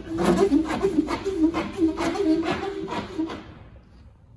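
4-inch PVC pipe squeaking against the rubber gasket in the tank wall as it is wiggled and pushed in, in short repeated squeaks about three a second, stopping about three and a half seconds in.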